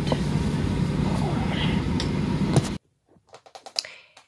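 Steady passenger-plane cabin noise, a loud drone with a low hum, that cuts off suddenly near the end. A few faint clicks follow in a quiet room.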